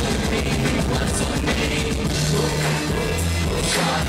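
Live rock-backed band playing at full volume: drum kit with cymbals, electric guitars and keyboard over a steady bass line.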